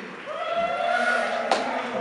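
A person's voice held on a long, drawn-out sound, with a single sharp click about one and a half seconds in.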